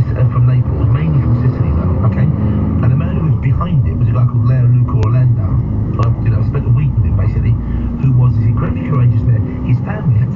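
Lorry engine running steadily inside the cab as the truck pulls away and gathers speed, under muffled, indistinct talk from the cab radio.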